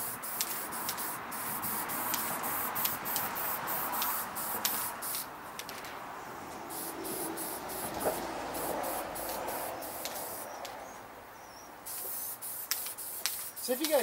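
Aerosol spray-paint can hissing in repeated short bursts as paint is sprayed onto lawn mower handlebars, with a lull in the spraying near the end before a few more bursts.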